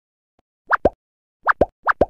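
Cartoon water-drop plop sound effects, short rising 'bloop' notes in three quick pairs, for a ball splashing into water.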